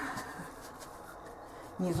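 Faint rustling and light taps of a deck of cards being handled and set down on a cloth, between a woman's spoken words.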